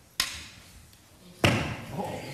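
Two sharp knocks about a second and a quarter apart, the second louder and ringing briefly in the room: a small hockey stick striking a puck, a child's shot at a net.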